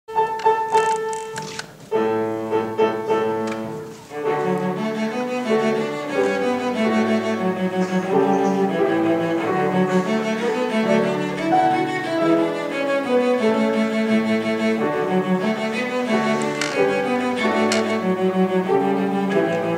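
Cello played with the bow: a few longer notes in the first four seconds, broken by short pauses about two and four seconds in, then a quick, even run of short notes.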